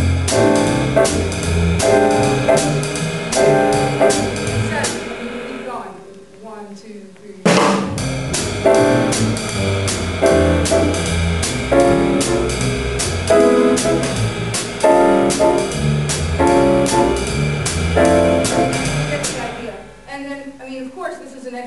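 Jazz piano trio with drum kit playing medium-tempo swing: the piano comps with short, repeated chord stabs in a Charleston figure displaced by an eighth note, off the downbeat. The playing thins out and nearly stops about five seconds in, then comes back in on a sharp crash about two seconds later.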